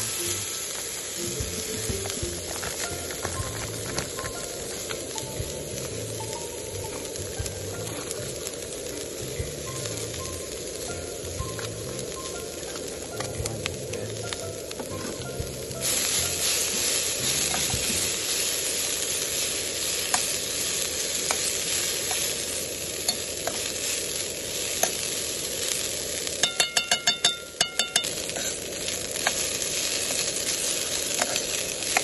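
Fried rice with chunks of offal sizzling in a hot oiled pan while a metal ladle stirs and scrapes through it. The sizzle turns louder about halfway through. Near the end comes a quick run of sharp, ringing clacks.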